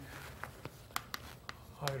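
Chalk writing on a blackboard: several sharp clicking taps of the chalk against the board, spread unevenly through the pause.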